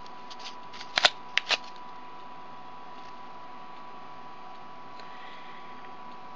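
Cardboard bracelet loom being handled as threads are moved into its notches: a few short rustling scrapes in the first second and a half, then only a faint steady hiss with a thin high tone.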